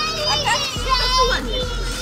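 Children's high-pitched voices chattering and calling out over one another.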